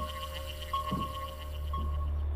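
Sci-fi electronic soundtrack: a steady low hum under a high beeping tone that repeats about once a second, with a faster high-pitched pulsing above it.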